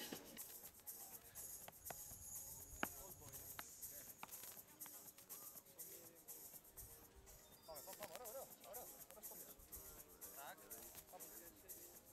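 Near silence: faint open-air court sound with a few short, sharp knocks, the loudest about three seconds in, and faint distant voices in the second half.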